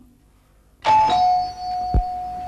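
Two-note doorbell chime, a higher note then a lower one that rings on, starting about a second in. A dull thump comes near the end.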